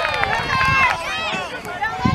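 Several voices talking and calling out over one another, some high-pitched and held.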